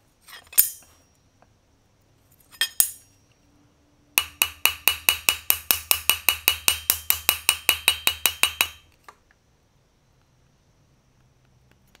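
Carbide-tipped straightening hammer striking a hardened O1 steel knife blade on an anvil: two single taps, then a fast even run of strikes, about six a second for nearly five seconds, each with a high metallic ring. The hammering stretches one side of the hardened blade to take out a remaining warp after quenching.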